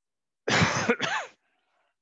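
A man clearing his throat with two quick coughs about half a second in, lasting under a second in all.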